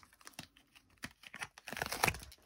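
Silicone mold being flexed and peeled off a cured resin casting: scattered small crackles and clicks, louder near the end as the mold comes away.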